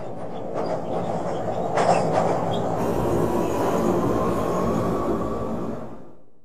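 Subway train running on the rails, a steady rumble with a brief squeal of the wheels about two seconds in, fading away near the end.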